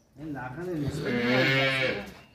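Cattle mooing: a single drawn-out call that starts just after the opening, wavers, then holds steady for about a second before fading.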